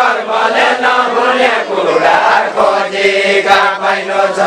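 A group of men singing a deuda verse together in a chanting style, their voices rising and falling in a slow, repeating line.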